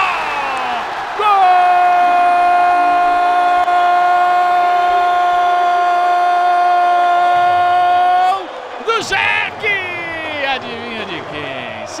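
Sports commentator's drawn-out goal cry, a single steady note held for about seven seconds over crowd noise, followed by excited speech.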